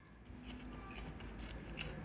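Faint rubbing of a gloved hand pressing and spreading semolina dough across a metal baking pan.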